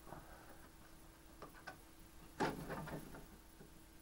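Plastic parts being handled and fitted by hand: a few light clicks, and a short scraping rustle a little over two seconds in, the loudest sound.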